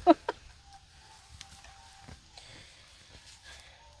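The tail of a man's word at the start, then quiet outdoor background with a faint steady tone lasting about a second and a half and a few faint ticks.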